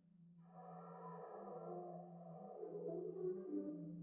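Free improvisation on contrabass clarinet and brass: a steady held low note, joined about half a second in by a wavering cluster of higher tones that slowly sinks in pitch.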